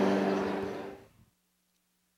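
The last strummed chord of an acoustic string instrument rings out and fades, ending about a second in. After that there is near silence with only a faint low hum.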